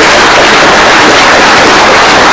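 Audience applauding at the end of a conference talk: a dense, steady, loud wash of many hands clapping.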